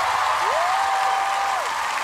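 Studio audience applauding and cheering at the end of a song, with one long call from a single voice that rises, holds and falls about half a second in.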